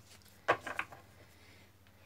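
A quick clatter of knocks about half a second in, one sharp and three weaker, from a stack of tarot cards being gathered and tapped down on a wooden table. Otherwise quiet room tone.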